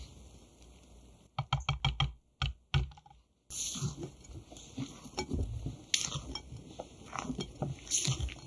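Wire whisk and then a spatula folding meringue into a thick batter in a glass bowl: soft, wet, irregular squelches and swishes with light taps and scrapes against the glass. There is a brief cut to silence about three seconds in.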